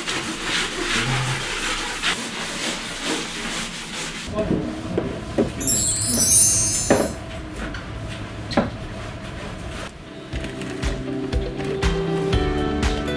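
Repeated rubbing strokes of scrubbing during cleaning for about the first four seconds. A brief twinkling sparkle sound effect follows about six seconds in, and background music starts near the end.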